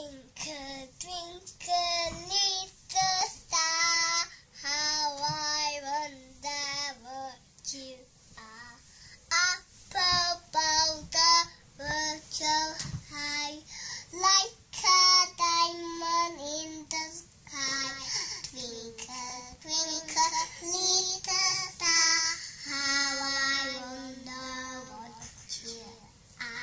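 A young child singing solo without accompaniment, in short phrases with brief breaks between them.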